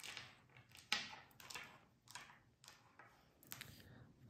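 Small tumbled crystal stones being set down one at a time on a wooden table, each one a sharp click. There are about six clicks, roughly every half second to second.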